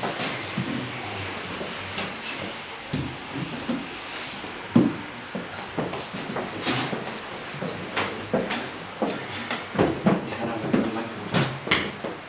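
Wooden picture frames and box frames being handled, taken down and put up against a wall: a series of knocks, taps and scrapes of wood on wall and floor. The sharpest knock comes about five seconds in, with a quicker run of taps near the end.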